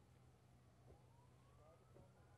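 Faint siren wailing, its pitch rising slowly from about a second in, over a low steady hum.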